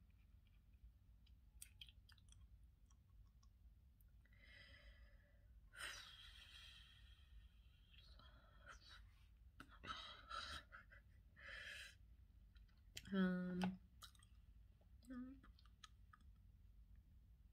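Felt-tip marker strokes on the paper page of a puzzle book, in several short passes, with faint scattered clicks. A brief hummed voice sound about 13 seconds in.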